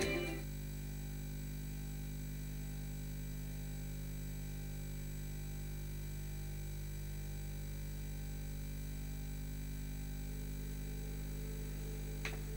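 Music fading out in the first half second, then a steady low electrical hum with no other events.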